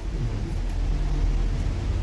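A low, steady rumble.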